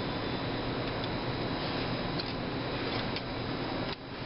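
Steady fan-like background hiss with a few faint light ticks as safety wire is twisted by hand between drilled bolt heads.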